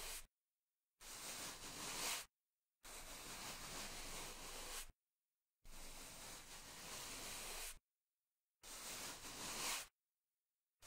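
Bristle scrub brush rubbed in long strokes: four scrubbing passes of one to two seconds each, with dead silence between them.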